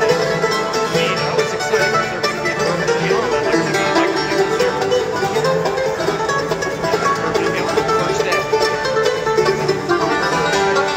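Bluegrass band playing live: five-string banjo, mandolin and acoustic guitar picking together at a steady, even loudness.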